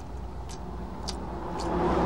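A low, steady rumble in the film's soundtrack that swells louder towards the end, with a few faint clicks.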